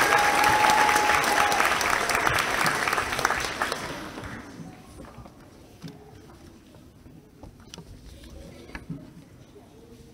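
Audience applauding, fading out over about four seconds into quiet room sound with a few scattered claps and knocks. A steady high tone sounds over the clapping for the first second or two.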